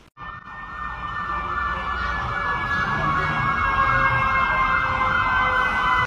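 A sustained, high wavering tone over a low rumble, swelling in over the first two seconds and then holding steady.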